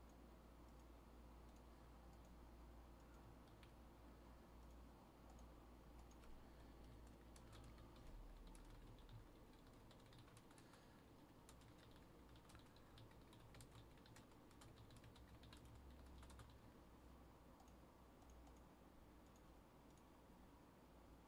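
Faint typing on a computer keyboard, a scatter of short key clicks that come thickest in the middle stretch.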